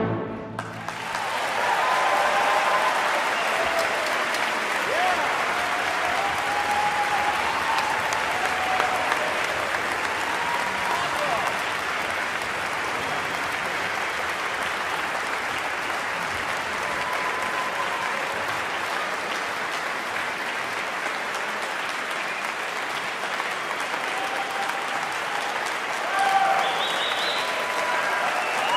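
Concert-hall audience applauding with scattered cheers, starting within about a second of the orchestra's final chord breaking off and going on steadily.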